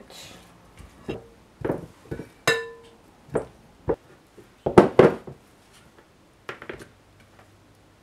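A metal spoon scraping and tapping against a glass bowl and a glass jar while thick blended herb paste is spooned across, in separate knocks with quiet gaps between. One tap leaves a short glass ring about two and a half seconds in, and the loudest cluster of knocks comes about five seconds in.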